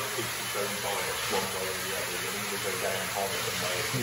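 Steady hiss of water circulating in a koi tank, with faint low voices murmuring under it.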